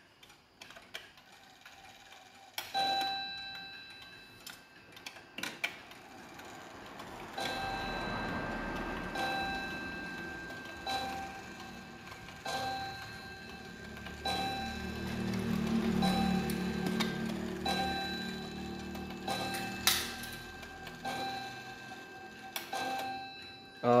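Sato Clock 15-day Japanese pendulum wall clock striking the hour on its single nickel-silver gong with one hammer: ten ringing strikes about a second and a half apart, counting out ten o'clock, with the pendulum ticking underneath.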